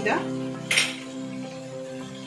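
A single short clink of a measuring spoon against the cooking pot, about a second in, as a spoonful of spice is tipped in. Steady background music plays under it.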